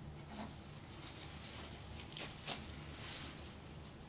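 Faint rubbing and scraping as painting tools are handled at the painting table: a few short strokes, the sharpest about halfway through, over a low steady hum.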